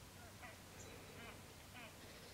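Near silence, with three faint, short honking calls from a distant water bird, spaced about half a second to a second apart.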